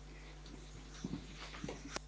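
Quiet lecture-hall room tone: a steady low hum with a few faint, soft knocks and rustles.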